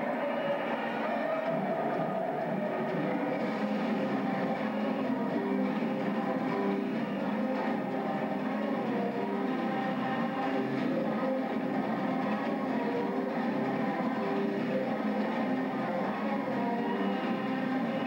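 Recorded song intro played over an auditorium sound system: sustained, droning tones that shift in pitch in steps, with no clear beat.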